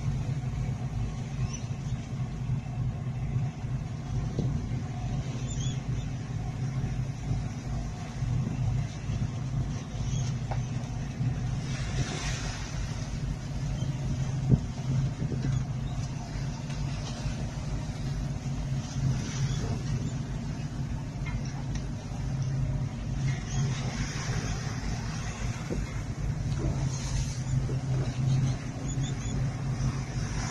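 A boat's engine running steadily at sea, with waves splashing against the hull now and then.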